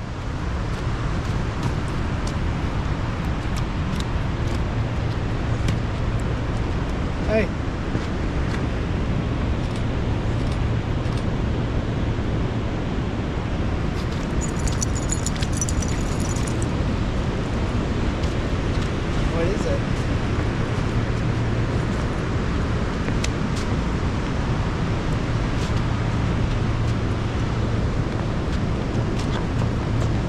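Steady rushing of a shallow river running over rocks and rapids, with a low rumble that swells and eases several times.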